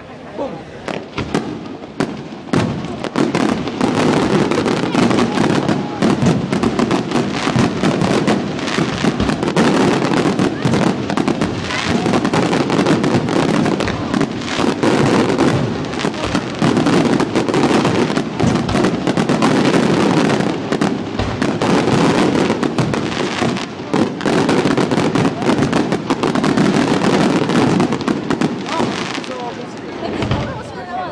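Aerial fireworks display: a dense, continuous barrage of rapid bangs and crackling from bursting shells, which starts about two seconds in and eases off near the end.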